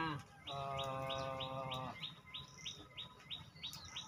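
A bird repeating a short, high, downward-slurred chirp about three times a second. For about the first half, a man's long, flat 'uhh' of hesitation sounds beneath it.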